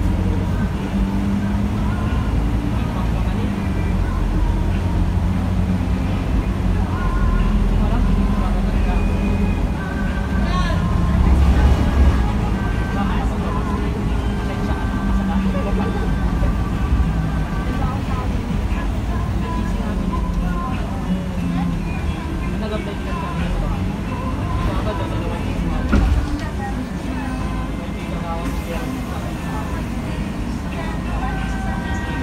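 Cabin noise of a Scania K310 bus on the move: a steady low engine and drivetrain drone, swelling briefly about a third of the way in, with one knock near the end.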